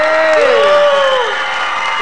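Studio audience cheering and clapping. Several drawn-out shouts arch up and down over the applause in the first second or so.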